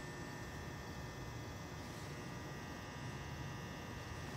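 Steady low hum with faint thin high tones above it, unchanging throughout.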